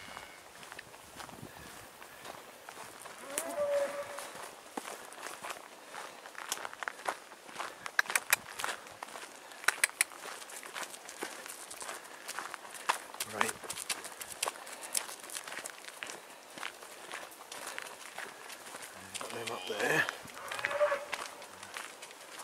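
Footsteps crunching on a gravel track. Near the end a cow moos a few times: the mother calling for her stray calf.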